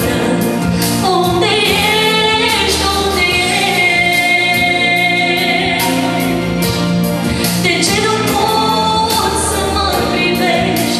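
A woman singing a Christian hymn in Romanian into a handheld microphone, with instrumental accompaniment, amplified through the sound system; the melody runs continuously with long held notes.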